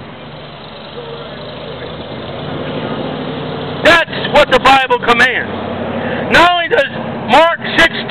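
A road vehicle's engine running with a steady low hum that grows a little louder. From about four seconds in, a loud voice cuts in with several short shouted bursts.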